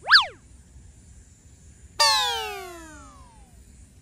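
Two cartoon-style sound effects added in editing. Right at the start a short tone sweeps up and back down in pitch. About two seconds in, a second tone sets in suddenly, slides down in pitch and fades out over about a second and a half.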